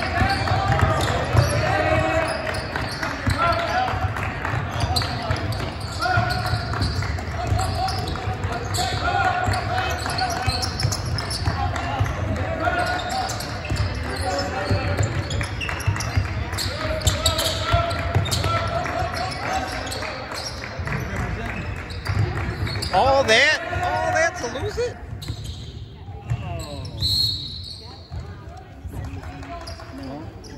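Basketball dribbled on a hardwood gym floor during a game, with sneaker noise and players' and spectators' voices echoing in the large gym. The sound thins out in the last few seconds.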